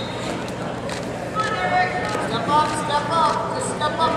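Noisy hall background of a wrestling crowd, with several voices shouting short calls from about a second and a half in.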